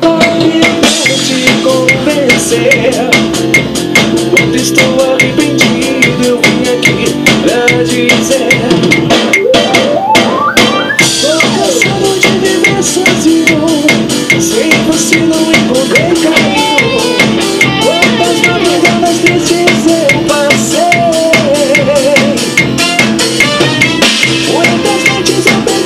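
Drum kit played in a steady beat, with cymbals, together with the band's song playing back: melody lines run over the drums throughout.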